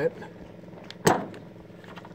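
Fuel gauge wiring plug connector on a 1977 Chevrolet C20 being pulled apart by hand, giving one sharp click about a second in, over a steady low hum.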